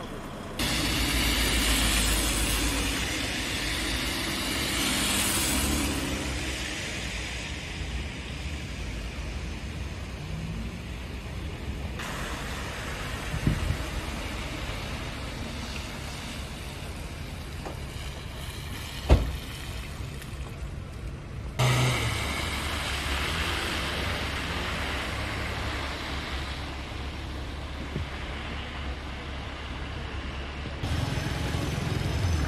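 Road traffic ambience: cars and buses running on slushy, snow-covered streets, with the background noise changing abruptly a few times. A single sharp click stands out about two-thirds of the way through.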